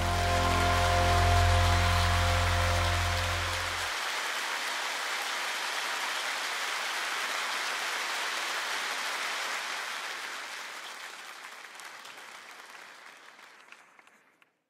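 The song's closing chord is held for about four seconds over audience applause. The applause goes on alone and fades away towards the end.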